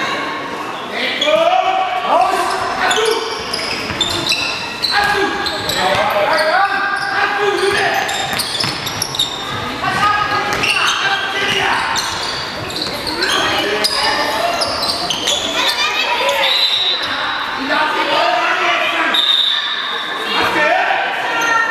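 A handball bouncing and being played on a sports-hall floor, with repeated sharp thuds, and high voices calling across the court, all ringing in a large, echoing hall.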